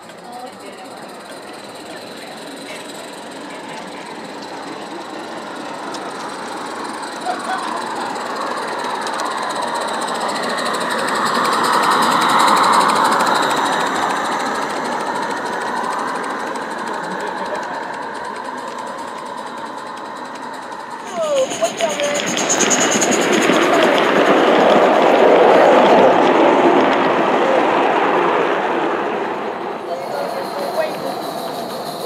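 G-scale model trains running on garden railroad track, their wheels rattling and clicking over the rails. The sound grows as one train nears and passes about twelve seconds in, then fades. After a sudden change near twenty seconds in, a second, louder pass follows close by.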